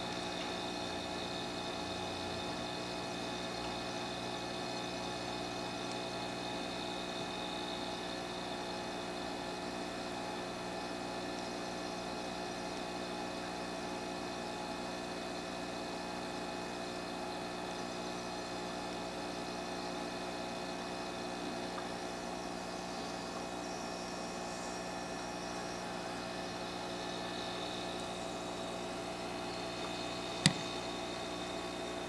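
A steady hum with hiss and several constant whining pitches, unchanging throughout.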